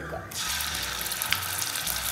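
Ginger-garlic paste hitting hot oil in a frying pan and sizzling. The hiss starts suddenly a moment in and carries on steadily with scattered sharp crackles.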